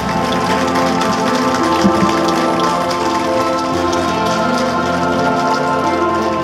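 Audience applauding, a dense even clatter of clapping, with music of long held notes playing under it.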